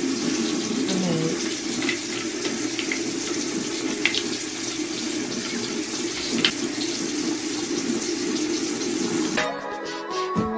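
Bathroom sink tap running steadily into the basin, with a few small clicks. Music comes in near the end.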